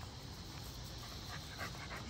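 American bully puppies playing on dry grass, heard faintly: light panting and scuffling.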